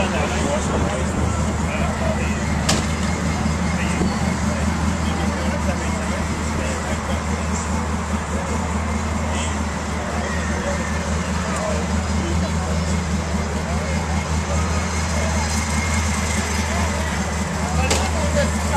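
Indistinct background chatter of people over a steady low engine drone that holds level throughout.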